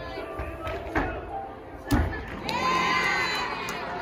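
Two thuds of a gymnast's tumbling landing on a sprung gymnastics floor, about a second in and a louder one near two seconds, followed by a burst of high-pitched shouting and cheering from young spectators over the hubbub of the gym hall.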